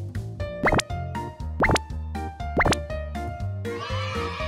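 Background music with a cartoon 'bloop' sound effect, a quick upward pitch sweep, heard three times about a second apart. A higher shimmering sound comes in near the end.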